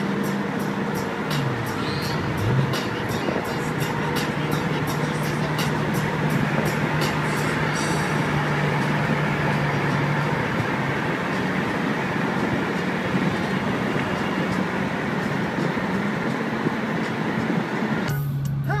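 Steady road and engine noise heard from inside a car cruising on a freeway, with a low, even hum under the tyre noise.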